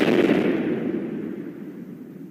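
Cartoon explosion sound effect as a lie detector machine blows up. The blast has already started and its noise dies away steadily.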